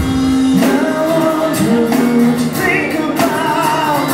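Rock band playing live, with a lead vocal singing long held, gliding notes over acoustic and electric guitars, bass and drums.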